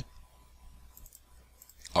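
Near silence: quiet room tone in a pause between a man's spoken phrases, with his voice returning near the end.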